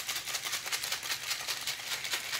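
Ice cubes rattling inside a stainless steel cocktail shaker being shaken hard, a fast even rhythm of about seven or eight knocks a second.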